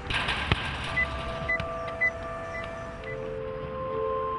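Road traffic: a vehicle passing by, then short high beeps about twice a second over held electronic tones.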